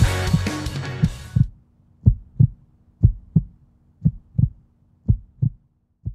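Outro rock music fading out over the first second and a half, followed by a heartbeat sound effect: a double thump repeating about once a second, over a faint steady low hum.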